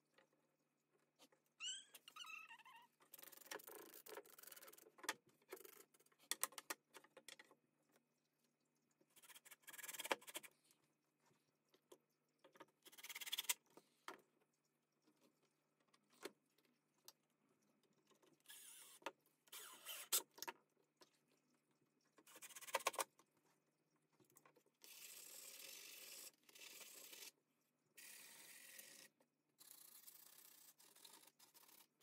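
Faint, intermittent handling sounds of wooden trim strips being fitted along the underside of a table: scrapes, rustles and light clicks and knocks, with several short louder bursts.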